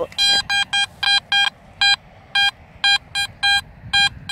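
Garrett AT Max metal detector sounding on a buried target: over a dozen short beeps at one pitch, in uneven runs, as the coil is swept back and forth over the spot. It is a repeatable signal, which the detectorist hears as 'a bit solid'.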